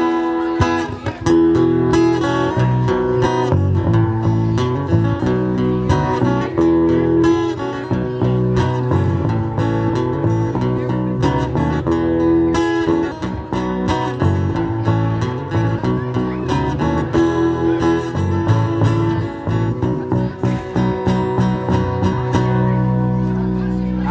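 Live acoustic guitar strumming chords together with an electric guitar, amplified through PA speakers, playing an instrumental passage with strong low notes underneath.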